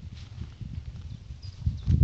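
Low, irregular rumbling from handling or wind on a phone microphone while moving through grass, growing louder near the end, with a faint bird chirp about one and a half seconds in.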